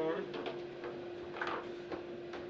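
Table football rods and figures knocking, with the ball struck on the table: a few sharp clacks spread through the two seconds, over a steady hum.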